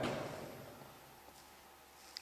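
The end of a man's words dying away in the first second, then near silence: faint room tone with a single tiny click.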